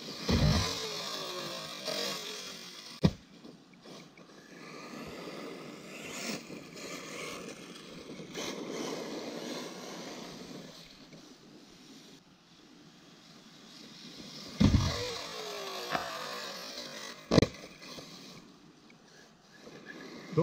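Electric 1/8-scale RC buggy with a 2250kv brushless motor on 6S, driving on gravel: the motor's high whine rises and falls with the throttle over tyres scrabbling on loose stones. A few sharp knocks come from bumps or landings, one about three seconds in and two near the end.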